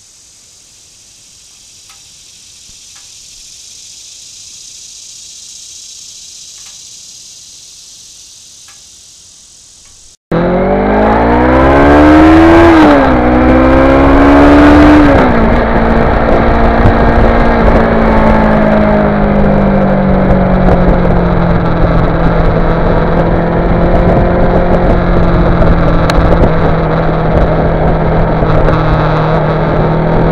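Steady chirring of insects, with a few faint ticks, for about ten seconds. Then a sudden cut to a Kawasaki Ninja 650R's parallel-twin engine heard from on board: it pulls up through the revs, drops at a gear change, pulls again, drops at a second shift, then settles into a steady cruise with wind rush.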